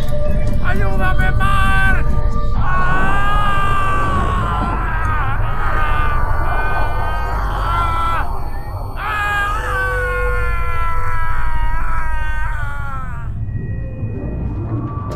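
Film soundtrack: long, wavering, voice-like wails layered over tense music and a steady deep rumble, with a short break a little after the middle.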